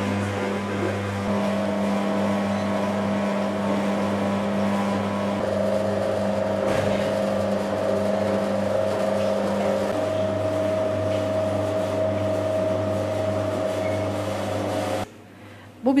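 Electric yuvalama ball-forming machine running with a steady, even hum. It cuts off suddenly about a second before the end.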